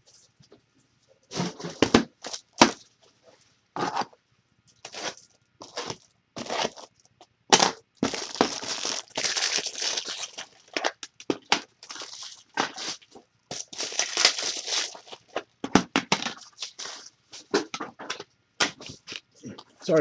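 Packaging being handled by hand: crinkling and tearing in repeated rushes, with sharp clicks and knocks in between, busiest through the middle stretch.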